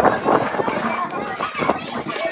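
A crowd of children talking and shouting all at once, a dense, continuous babble of many voices.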